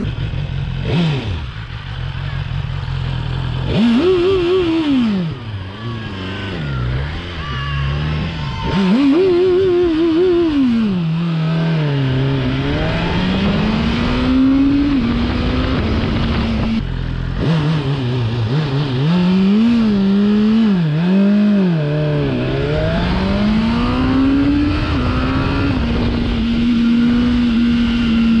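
A 2021 BMW S1000R's short-stroke inline-four engine under way, revved up and dropping back several times as the throttle is worked, then holding a steady pitch near the end. It is loud.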